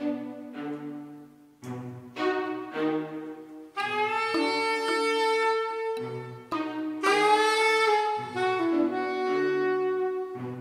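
Slow synth mallet chords over a bass line, then a soprano saxophone coming in about four seconds in with long held notes over them.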